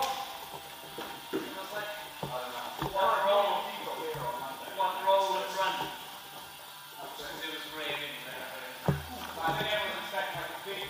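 Indistinct voices talking over background music, with one sharp thump about nine seconds in.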